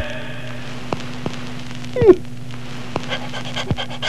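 Old English Sheepdog giving one short yelp that falls sharply in pitch about two seconds in, then faint panting near the end, over a steady low hum and a few scattered clicks.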